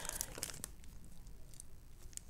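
Light rustling and crinkling of a packet of page flags being handled, with a few small clicks in the first half second, then faint.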